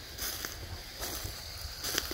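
Footsteps in dry leaf litter: a few soft, irregular rustling crunches.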